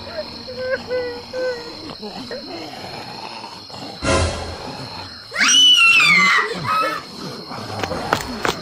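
Cartoon voice sound effects: a few short vocal sounds, a sudden loud burst about four seconds in, then a loud, high, falling cry lasting about a second.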